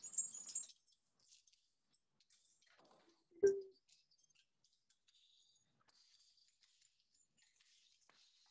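Carabiners and other climbing hardware clinking and rustling faintly as they are unclipped from a climbing harness, with one louder short sound about three and a half seconds in.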